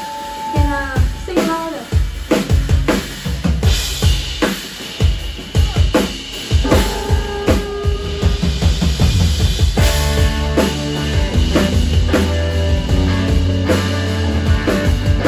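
A live rock band starting a song: a few spaced drum hits, then electric guitar notes, and the bass and full band come in about ten seconds in.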